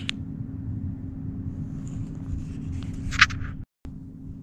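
Steady low background hum with a faint steady tone through it. A single short, sharp noise about three seconds in, then a brief dropout to silence near the end.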